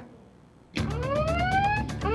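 A siren sound effect winding upward in pitch, starting abruptly about three-quarters of a second in after a brief lull, over a low steady hum.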